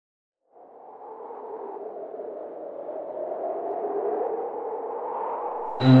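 A hollow, whooshing synthetic drone swells slowly out of silence as an intro sound effect. Just before the end, a loud buzzy synthesizer tone cuts in suddenly, with a high whine falling in pitch above it.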